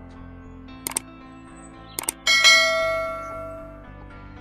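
Subscribe-button sound effect over background music: two short mouse clicks about a second apart, then a notification bell chime that rings out and fades over about a second and a half.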